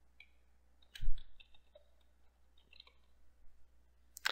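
Computer keyboard being typed on: one louder key press with a dull thud about a second in, then a few faint key taps.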